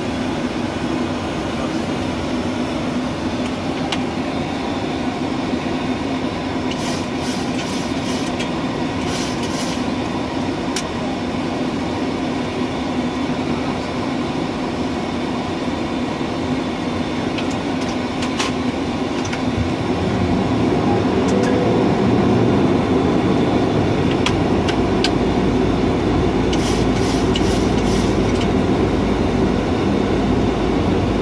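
Boeing 737 flight-deck noise in flight: a steady rush of airflow with engine drone, growing louder and deeper about two-thirds of the way through. Twice there is a quick run of small clicks.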